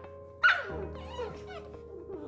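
A puppy's sharp yelp with a falling pitch about half a second in, followed by a few softer, higher yips and whines from puppies at play, over background music.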